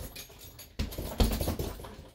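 Bare-knuckle punches landing on a hanging heavy bag, two hits about a second in, each followed by the jingle of its hanging chain, which is a bit loose at the top.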